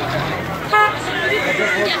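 One brief horn toot, a little under a second in, sounding over the chatter of a crowd of onlookers.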